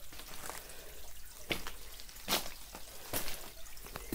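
Water dripping and trickling down a rock face into a shallow pool, with a few separate, louder drops.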